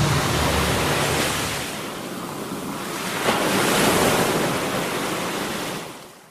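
Wind and rushing water from a motorboat moving at speed over the sea, with wind buffeting the microphone; the rush swells about three seconds in and fades near the end. The tail of a music track dies away in the first second or so.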